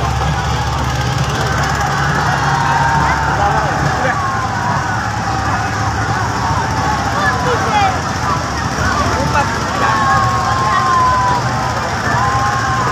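A large crowd of spectators shouting and calling out all at once, with a boat's engine running low underneath.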